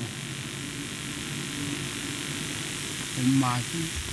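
A steady low hum and hiss of the amplified hall during a pause in an elderly man's talk. He speaks one short phrase a little after three seconds in.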